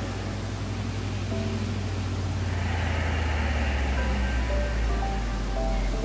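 Soft ambient background music: a low sustained drone that shifts pitch about halfway through, with sparse faint held notes above it.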